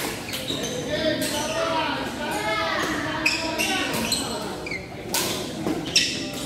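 Badminton rally: sharp racket strikes on a shuttlecock at irregular intervals, the loudest near the end, over steady background chatter echoing in a large hall.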